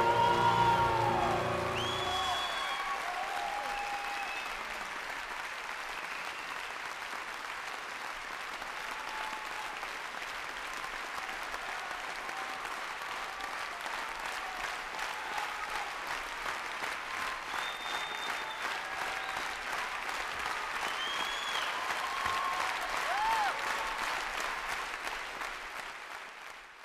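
The last held sung note and chord of a live song die away about two seconds in, then a concert audience applauds, with a few cheers over the clapping. The applause grows a little louder toward the end.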